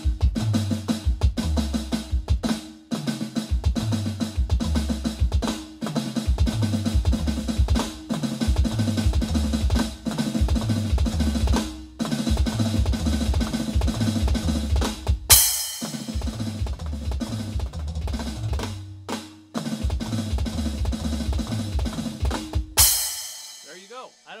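Electronic drum kit played at speed: a 16th-note-triplet fill, each time led by a flam and sticked right-left-right-right followed by two bass-drum kicks, played over and over with short breaks. A crash cymbal is hit about two-thirds of the way through and again just before the playing stops near the end.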